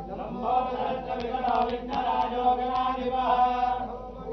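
Hindu priests chanting Sanskrit mantras in a ritual, with sustained pitched male voices in a steady, slowly moving recitation and a few brief sharp ticks about one and a half seconds in.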